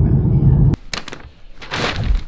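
Road and engine rumble inside a moving Volkswagen car's cabin, cut off suddenly under a second in; after it, a sharp click and a couple of short rustling noises.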